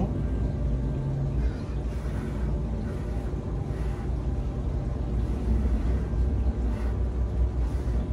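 A steady low rumble, with faint steady tones above it.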